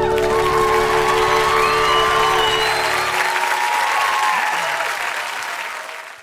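Audience applauding as the last held notes of a live song die away, the applause fading out at the very end.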